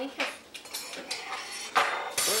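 A few short, sharp clinks and knocks in a small room, the loudest near the end.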